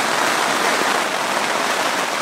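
Rain and wind beating on the fabric of a tent, heard from inside as a steady, dense hiss.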